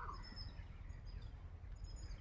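Faint chirps of small birds, a few short high calls near the start and again near the end, over a steady low rumble of wind on the microphone.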